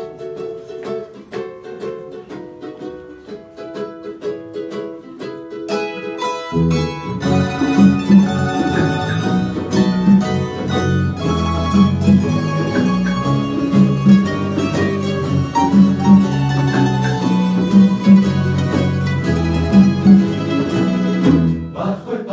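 Spanish plucked-string ensemble of bandurrias, laúdes and guitars playing an instrumental introduction: a light plucked melody at first, then about six and a half seconds in the full group comes in louder with rhythmic strummed chords and deep bass notes.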